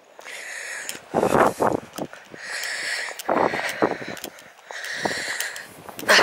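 A person breathing hard while walking, each breath in and out audible, about one cycle every two seconds, with footsteps crunching on loose stones.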